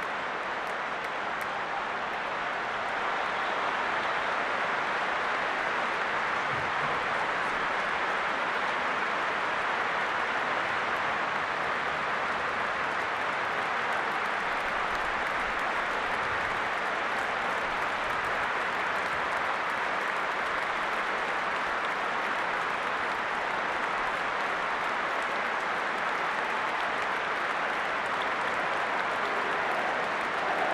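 Large stadium crowd applauding and cheering steadily, swelling a little about three seconds in.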